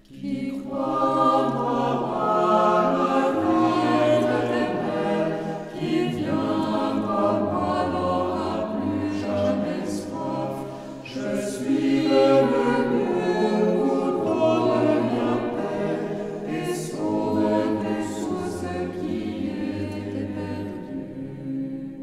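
Mixed choir of women's and men's voices singing a French hymn a cappella in several parts. The singing enters right at the start after a brief hush and eases off near the end.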